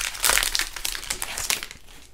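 Crinkling of a Pokémon card booster pack's foil wrapper as it is pulled open and the cards are taken out, dense crackling that dies away near the end.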